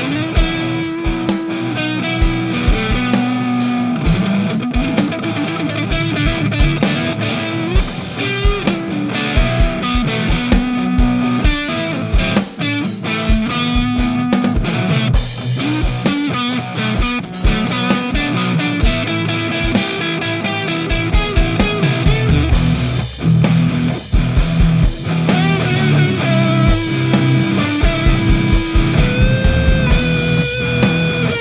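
Electric guitar played through the Audio Assault Shibalba amp-sim plugin with distorted, crunchy lead and rhythm tones, over a drum track. About three-quarters of the way through the part changes and gets a heavier low end.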